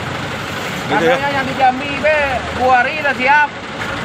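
A man talking from about a second in, over a steady low rumble of traffic and idling truck engines.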